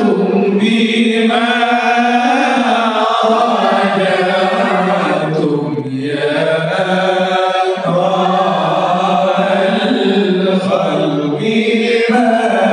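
Group of voices chanting sholawat, the devotional Arabic invocation of blessings on the Prophet Muhammad, in long held phrases led by a male voice on a microphone. It has short breaths between phrases.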